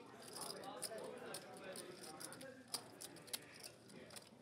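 Faint murmured talk at the table with the clicking of poker chips being handled, two sharper clicks coming near the end.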